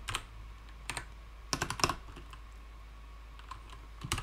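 Typing on a computer keyboard: a few separate keystrokes in the first second, then a quick run of key clicks around the middle, then no more keys.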